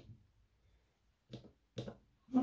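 Faint handling sounds as a watch on a timegrapher's microphone stand is turned to a new test position: a light click at the start, then two short knocks about a second and a half in.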